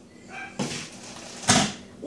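A single sharp knock on a hard surface about one and a half seconds in, preceded by a faint short vocal sound.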